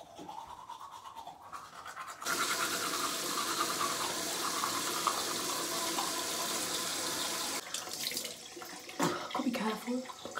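Teeth being brushed at a bathroom sink. A loud, steady noise starts suddenly about two seconds in and cuts off suddenly about three-quarters of the way through.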